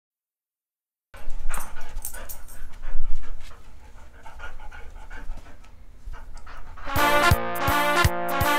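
A Yorkshire terrier playing, its dog sounds heard close up over a low rumble, starting about a second in. Near the end, upbeat synthesizer music with a steady beat comes in.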